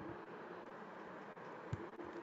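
Faint steady background hiss with a single soft click about three-quarters of the way through.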